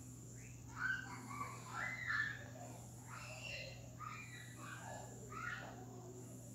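Faint, scattered bird chirps, short rising and falling calls repeated several times, over a steady low hum.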